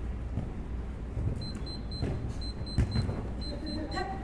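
Futsal ball being kicked during play on an artificial-turf court: a few short dull thuds, the clearest about three quarters of the way through, over a steady low background rumble.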